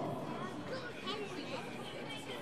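Faint chatter of several people's voices in the background of a large indoor hall.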